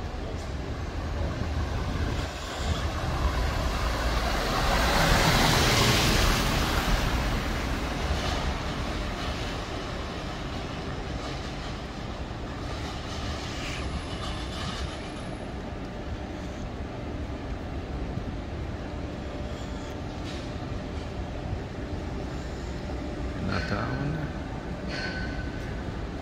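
City street noise: a steady rumble of traffic and activity, with a louder rush that swells and fades about five seconds in.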